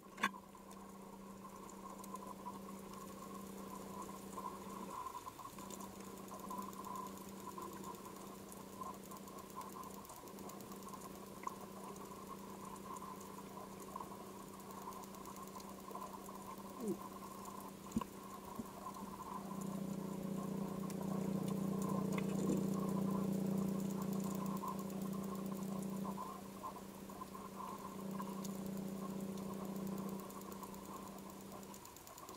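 Faint underwater ambience: a steady low hum that swells for a few seconds in the second half, with light scattered clicking and crackling.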